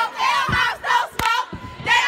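A group of girls shouting a chant together, loud and rhythmic, with a couple of sharp claps on the beat and a brief pause near the end.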